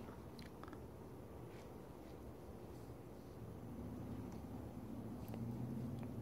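Faint handling noise: a few soft, scattered clicks and rubs as a hand-held magnifying loupe and camera are moved over a circuit board, over a low hum that grows a little louder near the end.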